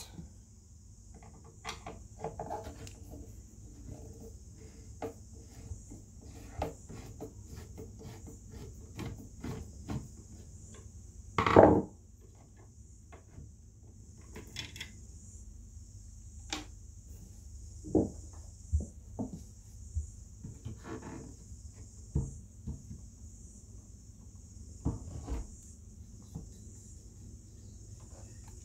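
Scattered clicks, knocks and scrapes of a loudspeaker driver being handled and worked loose from a particleboard speaker cabinet, with one louder knock about twelve seconds in.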